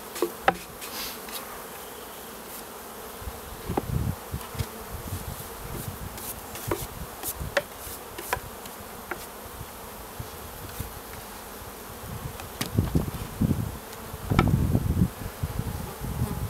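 Honeybees buzzing around an opened wooden hive, a steady hum, with scattered sharp wooden clicks and knocks as the hive boxes and frames are handled. Heavier low thumps and rumbles come a few times, loudest near the end.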